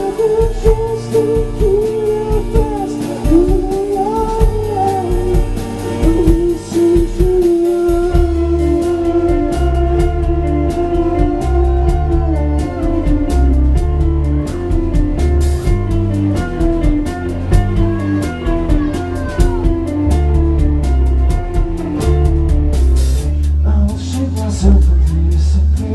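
A rock band playing live with electric guitars, bass and drum kit, a wavering melodic line running over the chords. About eight seconds in the band comes in fuller, with heavier bass and steady drum hits.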